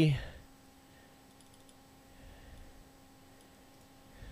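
Faint clicks of a computer mouse, over a low steady hum.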